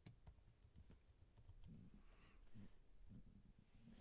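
Faint keystrokes on a computer keyboard, a scattering of light, irregular clicks as a name is typed in.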